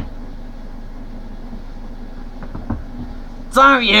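A steady low hum, with a couple of faint knocks a little past halfway, then a man's voice starting near the end.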